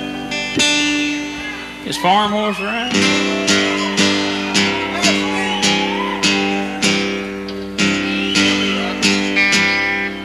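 Live band music led by an acoustic guitar strumming chords about twice a second, with a lead line bending in pitch a couple of seconds in.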